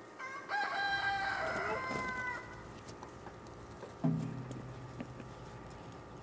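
A rooster crowing once: a held call of about two seconds that dips slightly in pitch at the end. About four seconds in comes a short, low sound.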